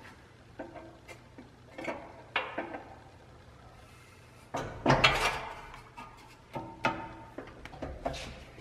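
Hand-operated sheet-metal brake bending a steel panel: a series of metal clanks and rattles as the bending leaf is swung and the sheet is shifted and re-clamped. The loudest clatter comes about five seconds in.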